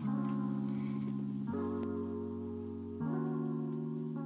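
Background music: held chords that change about every second and a half.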